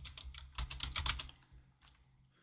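Computer keyboard typing: a quick run of keystrokes over about a second and a half, then it stops.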